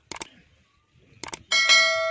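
Subscribe-button animation sound effect: two quick double mouse-clicks, then a bell notification ding about one and a half seconds in that rings on and slowly fades.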